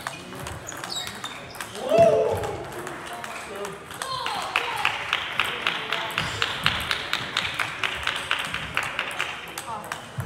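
Table tennis ball clicking sharply off bats and table in a fast, fairly even series, starting about four seconds in. A loud voice-like shout or call comes about two seconds in.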